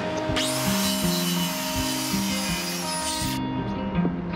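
A power saw spins up and cuts through a length of 2x4 lumber for about three seconds, then stops suddenly. Background music plays throughout.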